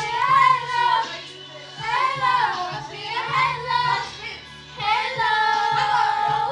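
Young girls singing along with a karaoke backing track, in phrases of a second or two with some long held notes.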